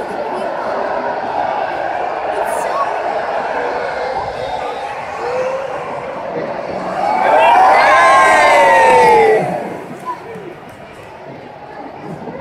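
Large stadium crowd chattering, then a loud cheer of many voices whooping together from about seven seconds in, their pitch rising and then falling, as a Mexican wave passes. The cheer falls away about two and a half seconds later.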